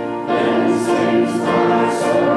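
Congregation singing a hymn together, in long held notes.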